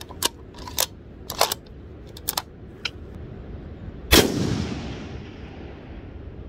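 Savage 110 BA Stealth bolt-action rifle in 6.5 Creedmoor. A few light clicks come from the rifle being readied, then it fires a single shot about four seconds in, and the report rolls away over the next couple of seconds.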